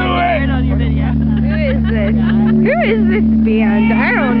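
Amplified electric instruments held in a steady low drone through the stage amplifiers, with people shouting and whooping over it, one high whoop about three quarters of the way through.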